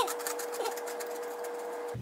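Crunchy chickpea-based cereal puffs being chewed, a rapid run of small crunching clicks, with a faint steady tone underneath.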